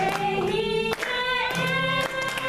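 Two women singing long held notes to a strummed acoustic guitar.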